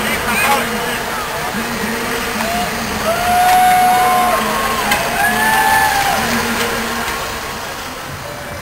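Spectators shouting and whooping, several voices overlapping in long held calls, loudest about three to six seconds in. A parade truck's engine runs underneath.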